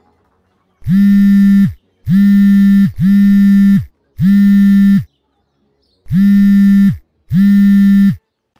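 Mobile phone vibrating in six low buzzes of about a second each, with short gaps: an incoming call.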